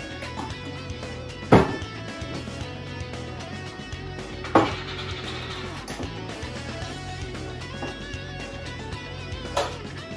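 Background guitar music with a steady bass line, broken three times by sharp knocks, about one and a half, four and a half and nine and a half seconds in.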